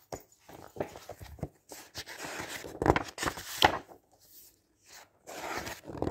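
Glossy pages of a Daphne's Diary magazine being turned by hand, the paper rustling and flapping in bursts. It is loudest in the middle, with two sharp snaps of a page, and another page is turned near the end.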